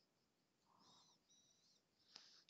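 Near silence: room tone, with a faint high warbling sound twice in the second half.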